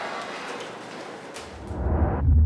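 Steady hiss of background noise with a couple of faint clicks, cut off near the end as a deep throbbing bass pulse of an intro sound effect comes in about a second and a half in and grows louder.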